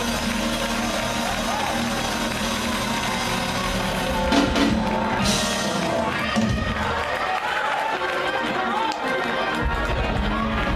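Live gospel praise-break music from a church band, with the drum kit playing and the congregation's voices shouting over it.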